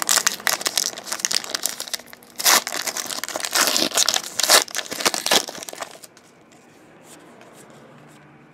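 Trading card pack wrapper being torn open and crinkled by hand: dense, rapid crackling that stops about six seconds in.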